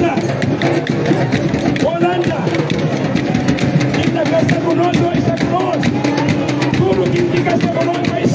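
A man's voice singing or chanting through a microphone and loudspeaker over quick, steady drumming, like a rally song.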